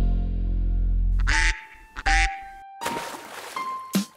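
Cartoon duck quacks over the backing music of a children's song: a low held note first, then two short quacks about a second and a half and two seconds in.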